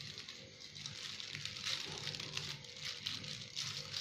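Soft rustling and crinkling of a plastic food-prep glove as a hand scoops shredded chicken salad from a bowl onto a plate, under faint steady tones in the background.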